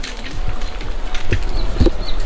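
Footsteps of a person walking, a handful of irregular steps.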